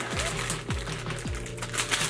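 Background music with a steady drum beat, a little under two beats a second, under light clicking from cards and card sleeves being handled.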